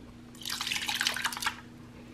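Home-canned diced tomatoes and their juice pouring from a glass mason jar into a slow cooker's crock: a wet, splattering slop lasting about a second.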